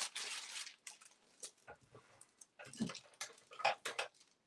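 Rustling and handling noises from rummaging through craft supplies and paper for a pen: a burst of rustling in the first second, then scattered small taps and scrapes.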